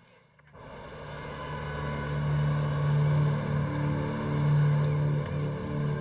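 A steady, low engine drone fades in over the first two seconds and then holds at an even level.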